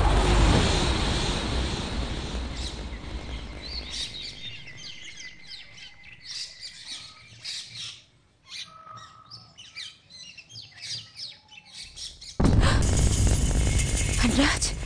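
Music fades out over the first few seconds, then small birds chirp in many quick, high, short calls. A loud sound cuts in abruptly near the end.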